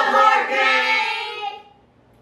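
Several voices of a family, adults and children, calling out together in one long, drawn-out sing-song call that stops shortly before the end.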